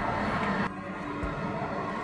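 Water bath canner of hot water bubbling around submerged glass canning jars: a steady hiss that drops a little in level under a second in.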